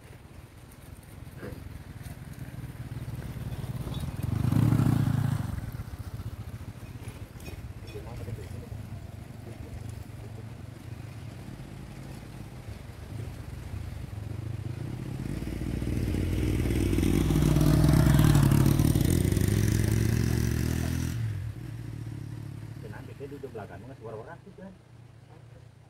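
Motorcycle engines going by on a road, twice: a short loud pass about five seconds in, then a longer one that builds to its loudest near the end and fades away.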